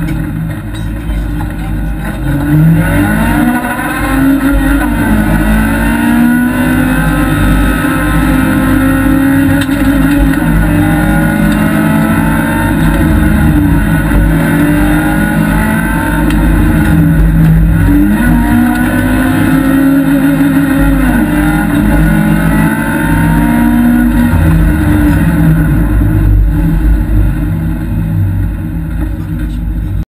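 Honda Civic rally car's engine heard from inside the cabin under hard acceleration, the revs climbing and dropping back again and again through gear changes, over constant road and tyre noise.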